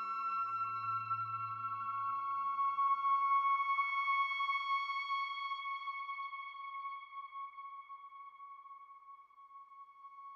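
Behringer ARP 2500 modular synthesizer: a high solo voice holds one sustained tone over a low drone. The drone dies away in the first few seconds, and the high tone fades out near the end.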